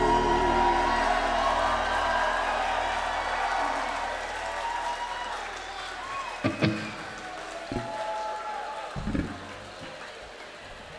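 A live band's closing sustained chord rings out and fades away over about four seconds. Concert crowd noise is left behind, with a couple of short whistles and a few brief thumps near the end.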